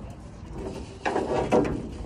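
Rubbing and scuffing handling noise of a rubber wiring conduit being folded and pushed into a van's rear door frame, louder from about a second in.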